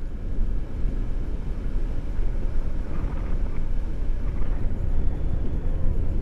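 Wind rushing and buffeting over an action camera's microphone during a tandem paraglider flight, a steady, heavy low rumble of airflow.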